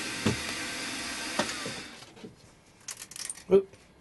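Bench milling machine spindle running steadily with a centre drill, then winding down and stopping about two seconds in. A few light metallic clicks follow as a drill bit drops into the table's T-slot.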